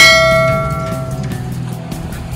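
A single bright metallic ding: a bell-like strike that rings with several clear tones and fades away over about a second and a half.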